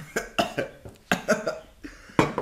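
A person coughing in two quick runs of short coughs, a reaction to a sip of vinegar-sour kombucha.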